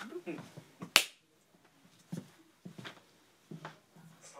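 A single sharp hand clap about a second in, used as a slate mark to sync the take.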